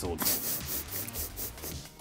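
Soft rubbing and scratching noise, well below the level of the speech around it.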